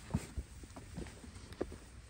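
Footsteps on a dirt path: a string of soft, irregular low thumps every few tenths of a second.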